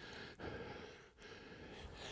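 Faint breathing, with one soft breath about half a second in; otherwise quiet.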